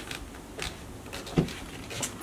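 Handling and movement noise: a few light clicks and one duller knock about one and a half seconds in, as a leather handbag with metal strap hardware is carried by a person stepping back.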